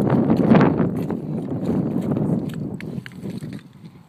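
Wind buffeting the microphone: a loud low rumble that swells and then dies away near the end.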